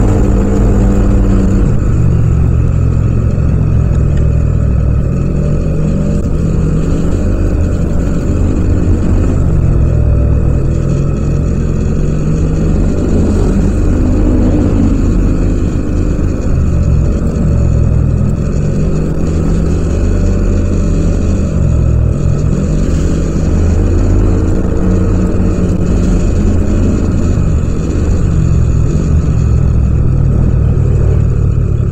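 Yamaha Aerox 155 scooter's single-cylinder four-stroke engine running under way, its pitch rising and falling again and again as the throttle is opened and eased through the ride.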